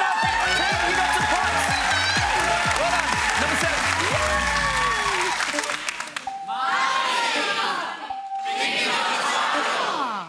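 Game-show music sting over a studio audience cheering and whooping for about six seconds. Then a short steady reveal tone sounds twice, about two seconds apart, each as a hidden answer is uncovered on the board and followed by audience applause.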